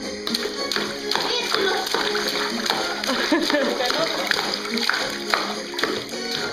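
A baby slapping and splashing the water of a plastic baby bathtub with his hands, in quick irregular smacks, while a baby's voice babbles and laughs. Music plays underneath.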